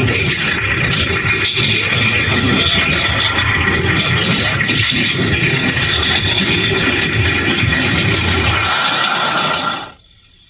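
Heavily distorted, effects-processed TV commercial soundtrack: warped music with scratchy, smeared sounds and no clear words. It plays continuously and loudly, then fades out just before the end.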